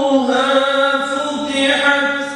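A man's voice chanting a long melodic line, unaccompanied, holding each note and sliding slowly between pitches.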